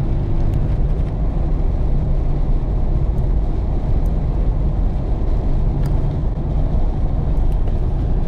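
Steady low rumble of engine and tyre noise inside a Jeep Cherokee XJ's cabin, driving on a snow-covered highway, with a few faint ticks scattered through it.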